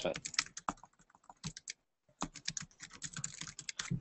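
Typing on a computer keyboard: a run of quick, irregular key clicks with a brief pause about halfway through.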